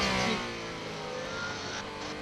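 Alpine A424 hypercar's twin-turbo V6 heard from the cockpit onboard, its pitch falling over the first second as the car slows, then holding steady.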